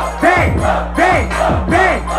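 Trap beat with deep sliding 808 bass over a PA, with rhythmic shouts from the crowd and MC in time with it, three shouts about two-thirds of a second apart.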